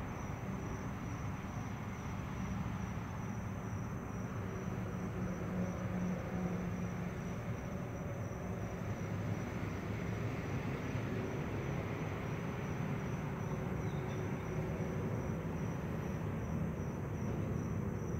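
Steady hum and hiss of aquarium equipment running, with a thin steady high tone above it.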